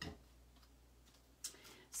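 Near silence, just low room hum, with a faint click at the start and a brief soft noise about a second and a half in.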